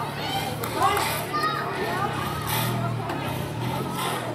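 Children calling and shouting during outdoor football play, with a man's brief call of encouragement, over a low steady hum.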